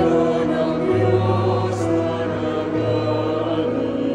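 Mixed chamber choir singing a slow sacred piece in long held notes over a low bass line that moves in steps.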